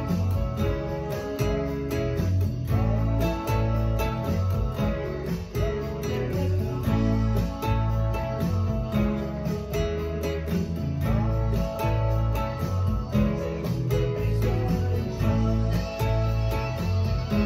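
Nylon-string classical guitar strummed in a steady rhythm, playing a rock song's chord pattern, with a deep bass line and regular high ticks underneath.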